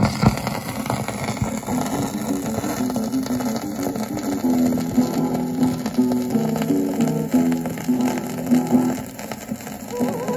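Music played from an old Columbia 78 rpm shellac record on a turntable: the instrumental opening of the song, with the disc's surface noise under it.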